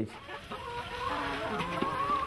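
Domestic chickens clucking, with one longer drawn-out call through the middle.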